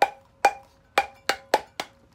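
Stainless steel tumbler knocked six times in quick succession to shake off excess glitter, each knock giving a sharp metallic tap with a brief ringing tone.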